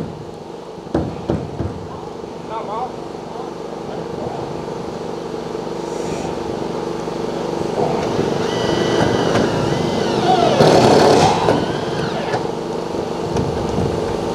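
A small engine runs steadily, growing louder to a peak about eleven seconds in and then easing a little, with faint voices over it.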